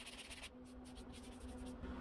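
Faint scratching of a hand sanding block with 120-grit sandpaper drawn lightly over body filler on a car panel. A faint steady hum runs underneath in the second half.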